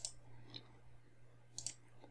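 A few faint computer mouse clicks, one near the start, one about half a second in and a quick pair later, made while navigating a file browser's folder tree.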